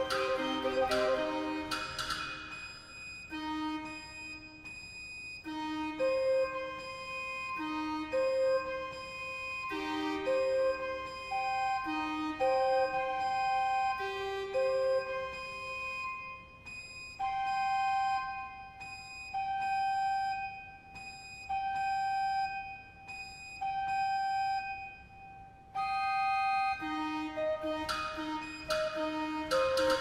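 Barrel organ pipes playing steady, flute-like held notes. Thick chords in the first couple of seconds thin out to sparse single notes separated by pauses. A single higher note repeats in the second half, and dense chords return near the end.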